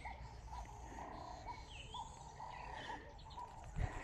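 Birds chirping faintly: a few short sweeping chirps, with a short note repeating about twice a second, over low background noise.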